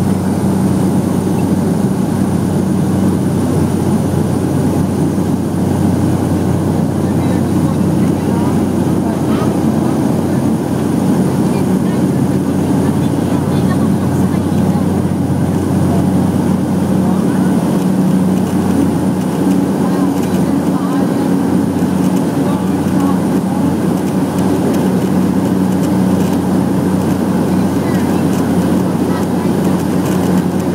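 Small propeller plane's engine and propeller heard from inside the cabin at takeoff power, a loud steady drone with a held low hum and a faint high whine, as the plane rolls down the runway and lifts off.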